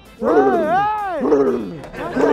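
A man's voice in two drawn-out exclamations: the first, starting shortly in, swells up and falls back in pitch, and a shorter one follows.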